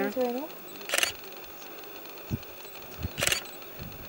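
Quiet background with two short hissing bursts about two seconds apart and a few soft low bumps between them: handling noise from a hand-held camera.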